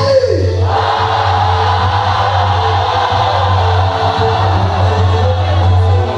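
Quadrilha junina dance music with a steady bass line; a singing voice slides down at the very start, and about a second in a crowd breaks into loud, sustained shouting over the music.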